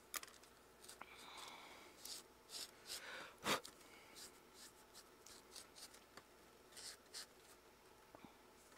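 Faint scratchy paintbrush strokes and handling of a painted foam claw on a cutting mat, with small clicks and a single knock about three and a half seconds in.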